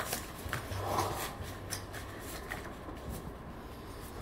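Playing cards and chips handled on a felt poker table: a few scattered, faint clicks and rustles, mostly in the first two seconds, over a steady low hum.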